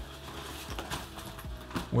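Handling noise from a fabric camera backpack being lifted off a desk: a soft rustle with a couple of light knocks.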